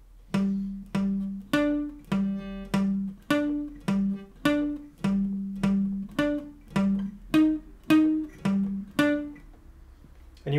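Steel-string acoustic guitar playing a slow, palm-muted single-note riff, about two picked notes a second, each note damped short. It moves between a low note on the A string's 10th fret and higher notes on the D string's 12th and 13th frets.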